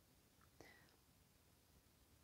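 Near silence: room tone, with one faint brief click a little over half a second in.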